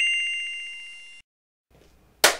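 A bright bell-like ding, likely an edited sound effect: a single ring with a fast rattling trill that fades and cuts off about a second in.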